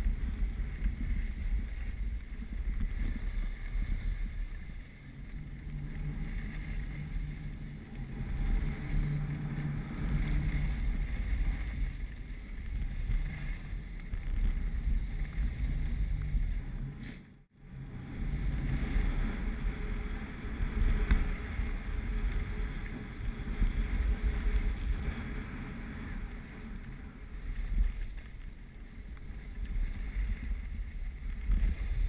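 Wind rushing and buffeting on the microphone of a camera carried by a skier moving downhill, with the hiss of skis sliding over packed snow. The sound cuts out for a moment a little past halfway.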